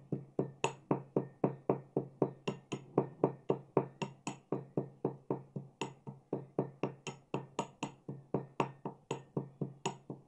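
Metal pestle pounding cardamom in a small stainless-steel mortar: sharp, ringing strikes in a steady rhythm of about four a second, crushing the pods fine.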